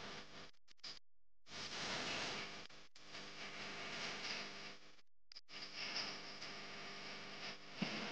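Faint noise of a large concert crowd, an even wash without clear music or voices, cutting out completely several times for a moment.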